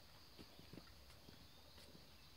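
Near silence, with a few faint, soft, irregular thumps.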